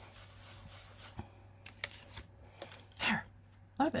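Paper towel swirled and rubbed over a paper mask on cardstock to blend in white ink: a soft scuffing with a few light paper clicks and rustles as the mask is handled and lifted off. A brief voice sound comes about three seconds in.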